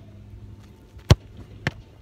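Two thuds of a football in a goalkeeping drill: a sharp, loud strike about a second in, then a softer thud about half a second later.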